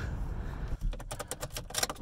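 A rapid, irregular run of light clicks and taps, starting a little before halfway through.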